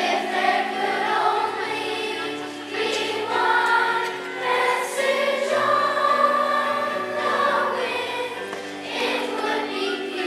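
Children's choir singing in unison with instrumental accompaniment, the sung phrases rising and falling over held lower notes.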